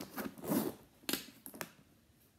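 Handling noise from a leather hobo handbag being shifted and turned in the hands: a rustle about half a second in, then two sharp clicks.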